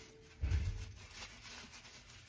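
A soft low thump about half a second in, then faint rustling of a paper towel being folded and wrapped around a finger.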